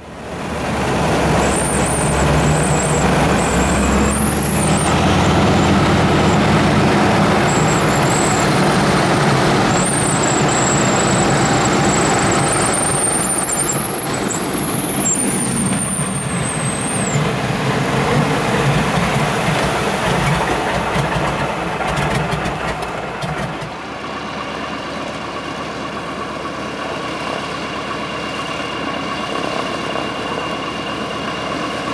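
De Havilland Canada DHC-2 Beaver's nine-cylinder Pratt & Whitney R-985 radial engine and propeller running loud at high power. About 24 seconds in, it drops to a quieter, steady low-power run as the floatplane taxis on the water.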